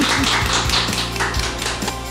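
Hands clapping rapidly, with a woman's laughter, over background music.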